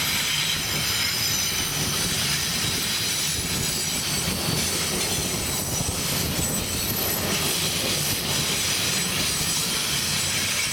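Amtrak Superliner bilevel passenger cars rolling past on curved track, wheels on rail rumbling and clattering under several thin, steady high-pitched squeals from the wheels on the curve.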